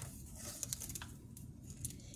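Faint rustle of a picture book's paper page being turned by hand, with a few light ticks in the middle.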